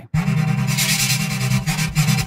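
Xfer Serum software synth patch sounding a sustained, buzzy low note with a rapid fluttering stutter from its LFOs, run through Serum's multiband compressor. It drops out for an instant at the start, and its top end brightens briefly a little before the middle.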